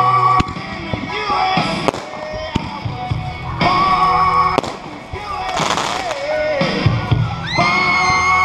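A song with a singer plays throughout. There are a few sharp bangs and a burst of crackling hiss a little past halfway, fitting fireworks going off.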